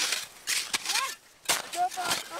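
Avalanche shovels digging into packed snow in quick, uneven strokes, about three scoops, to uncover a person buried in an avalanche-rescue exercise. Two brief voice sounds come between the strokes.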